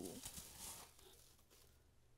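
Faint crinkling and rustling of packing wrap as a ceramic bowl is unwrapped, fading after about a second.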